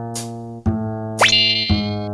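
Cheerful children's background music of sustained chords, changing with a light hit about half a second in and again near the end. About a second in, a cartoon sound effect glides sharply up in pitch and holds.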